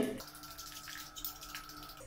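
A spoon stirring thick pancake batter in a ceramic bowl: soft, wet mixing sounds with a few light ticks, over a faint steady hum.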